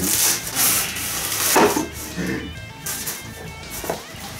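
A soft fabric carrying bag being handled and opened: rustling and rubbing strokes in the first half, the loudest about a second and a half in. Background music can be heard in the second half.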